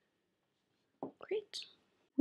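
Near silence, then about a second in a few soft whispered words with a short hiss, too faint for the recogniser to write down.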